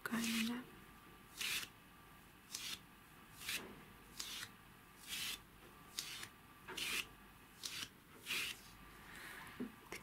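Fingertips and nails scratching over the carved surface of a small birch-bark box, in about a dozen short dry strokes, roughly one a second.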